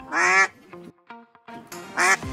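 Two short, nasal, quack-like honks, one near the start and one just before the end, over quiet background music.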